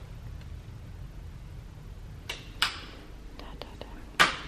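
Quiet room with a low steady rumble. Two short breathy hisses, like a whisper or an exhale, come a little past halfway, followed by a few faint clicks near the end.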